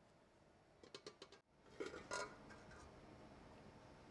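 Metal serving cloche clinking against a plate: a quick run of small clinks about a second in, then a couple of louder clinks and knocks around two seconds.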